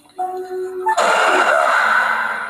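Soft mallet-percussion music with a music-box-like tune, cut about a second in by a sudden loud, noisy horror jump-scare sound hit that holds and slowly fades.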